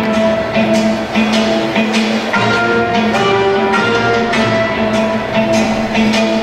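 Instrumental dance music with a steady beat and long held notes.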